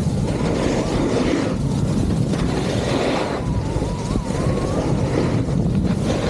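Wind rushing over the microphone and skis scraping across packed snow during a downhill run, the hiss swelling and easing with each turn.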